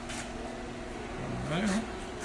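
Low steady background hum with faint voices; a brief distant voice comes in about one and a half seconds in.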